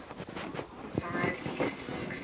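Indistinct, overlapping voices of several people, with shuffling and rustling as people move about.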